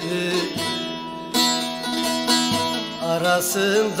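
Bağlama (long-necked Turkish saz) playing a plucked instrumental phrase between the sung lines of a Turkish Alevi folk hymn, with the singer's voice coming back in near the end.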